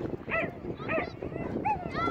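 A dog barking in short, high yips, about four in two seconds, over steady background chatter and outdoor noise.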